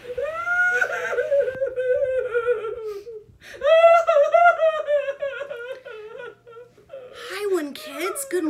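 High-pitched pretend crying voiced for a girl puppet: two long, wavering whimpering wails, with more sobbing sounds starting shortly before the end.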